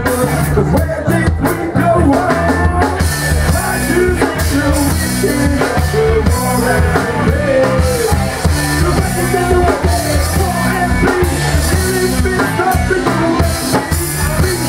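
Live rock band playing: electric guitar, bass guitar and drum kit with a steady beat, and a male singer over them.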